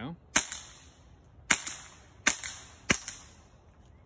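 Suppressed AR-style rifle firing four shots at an irregular pace, each a sharp crack with a short trailing echo. The reports are subdued enough to be likened to a pellet gun.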